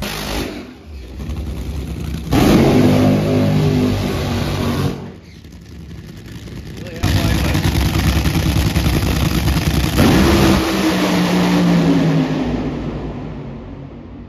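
Nitro Funny Car's supercharged nitromethane engine at full throttle: a loud blast from about two to five seconds in, then a longer run from about seven seconds in whose pitch falls as the car runs down the track, fading out near the end.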